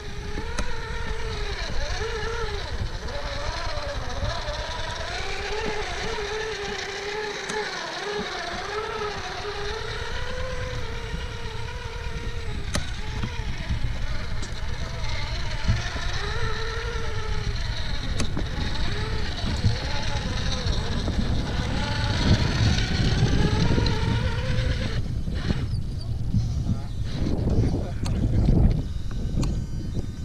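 Crawlmaster Pro 550 10T brushed motor and gears of an RC rock buggy whining as it climbs, the pitch rising and falling with the throttle. In the last few seconds the whine gives way to a rougher, lower rumble.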